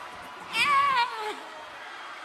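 One high-pitched, wavering vocal squeal about half a second in, lasting under a second and sliding down in pitch as it ends, over steady crowd noise in a concert arena.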